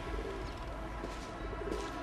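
Pigeons cooing over a steady low rumble.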